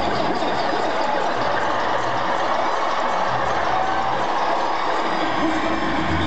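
Live electronic rock band with keyboards playing loud over a concert PA, heard from out in the crowd: a dense, steady mix with a low bass pulse.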